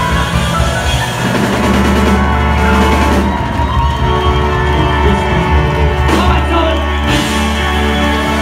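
A live rock band playing loud, without singing, recorded from the audience.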